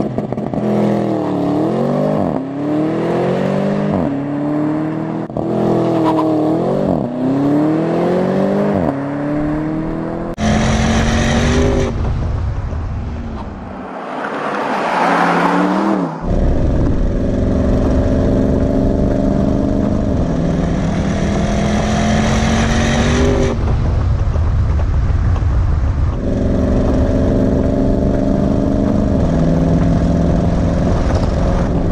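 Porsche Panamera Turbo S twin-turbo V8 accelerating hard: its note climbs and drops back with each upshift, about five times in quick succession. About midway there is a brief rushing pass. After that the engine runs at high speed with a steady note that creeps slowly upward.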